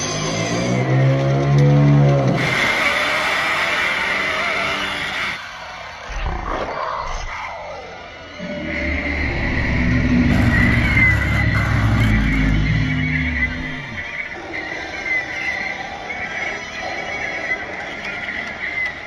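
Film soundtrack: music mixed with animal calls. A pitched, wavering call opens it, and a long, low call runs through the middle.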